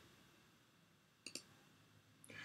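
Near silence broken a little past the middle by a single quick double-tick click of a computer mouse button, advancing the slide.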